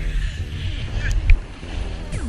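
Wind buffeting an action camera's microphone and a snowboard scraping over packed snow while riding downhill, a low rumble under a hiss, with one louder knock about two-thirds of the way through.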